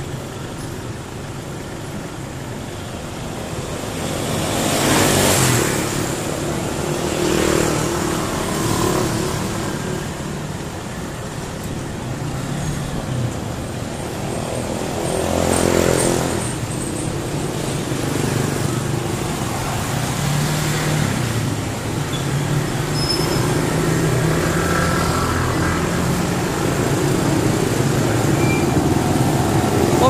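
Street traffic of motor scooters and cars running past, with a steady engine hum underneath. Two vehicles pass loudly and close, about five seconds in and again about halfway through.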